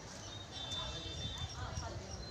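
Indistinct background voices of people talking, over a steady low rumble on the microphone.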